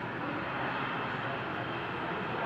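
ATR 72-600's twin Pratt & Whitney PW127 turboprop engines running on the ground after landing, a steady rushing noise heard from inside the terminal through the glass.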